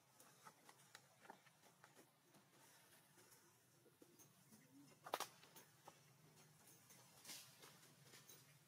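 Near silence: faint scattered ticks and rustles, with one sharper click about five seconds in.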